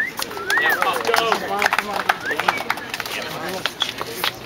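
Boys' voices calling out and hooting, with a high rising-and-falling hoot about half a second in, over scattered sharp clicks and slaps.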